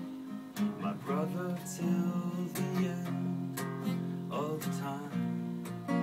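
Acoustic guitar strummed in a slow instrumental passage between sung lines, with a strum about once a second.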